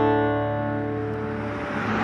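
Intro music: a strummed acoustic guitar chord ringing out and slowly fading. A faint wash of noise comes up near the end.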